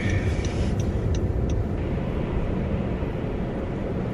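Steady low rumble of a car's engine and road noise heard from inside the cabin, with a few faint ticks in the first second and a half.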